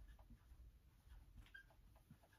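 Faint scratches of a dry-erase marker writing on a whiteboard, with a brief high squeak about one and a half seconds in.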